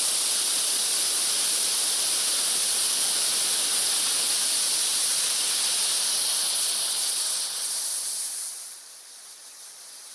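Leftover solid rocket fuel burning off the top of an epoxy smoke element with a loud, steady hiss. About eight and a half seconds in the hiss drops sharply to a much quieter burn as the fuel is spent and the epoxy burns on.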